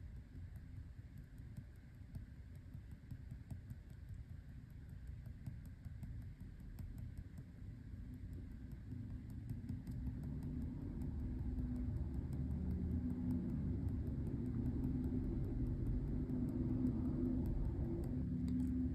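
Faint, rapid tapping and scratching of a BIC Round Stic ballpoint pen on textured Arches watercolor paper as it stipples and hatches a dark area. Under it runs a low rumble that grows louder from about halfway through.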